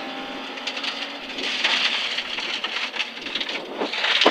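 Rally car at speed on a gravel road, heard inside the cabin: engine running under a steady rush of tyre and gravel noise, which swells about a second and a half in.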